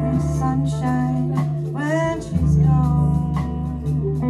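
A live jazz band playing: electric bass holding low notes under guitar and keyboard chords, drums marking time with cymbal strokes, and a lead melody that bends in pitch about halfway through.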